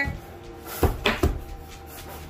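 Three quick knocks on a hard surface, close together, about a second in.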